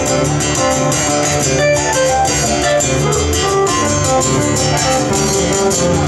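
Instrumental passage of a live blues song: an acoustic guitar strummed in a steady rhythm, with a keyboard.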